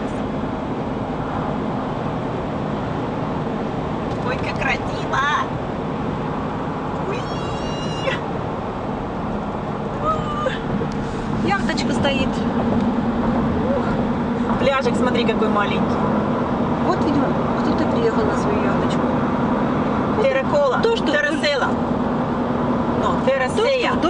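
Steady road and engine drone heard from inside a moving car, growing louder about eleven seconds in, with brief bits of voices over it.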